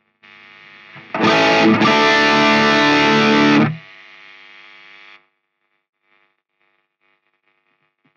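Electric guitar played through the MTurboAmp plugin's overdrive gain stages, with stage 2's high-pass and low-pass filters switched off, so the tone is full-range rather than mid-focused. After a quiet first second, one loud distorted chord rings for about two and a half seconds, then stops abruptly and fades out.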